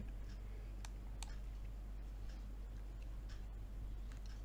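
A few computer mouse clicks, the two sharpest about a second in, over a steady low hum.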